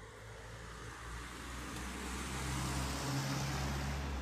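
A motor vehicle passing by: a low engine hum with road noise that swells over about three seconds and begins to fade near the end.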